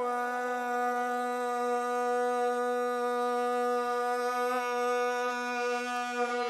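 A man's voice holding one long, steady sung note, the drawn-out ending of a line of Iraqi 'ataba folk singing.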